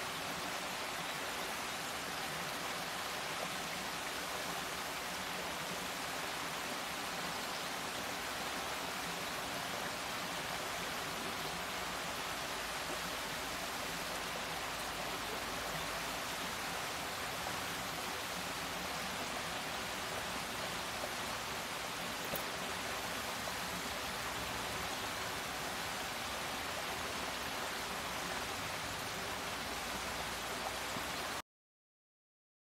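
Small waterfall cascading over rocks into a pool: a steady, even rush of water.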